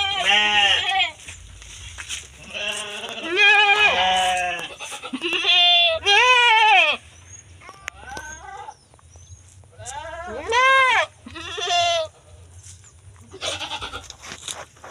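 Goats bleating loudly, about five long wavering bleats spaced a few seconds apart.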